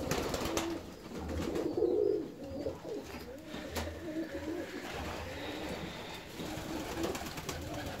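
Several fancy pigeons cooing, their low, warbling coos overlapping, with a few faint clicks.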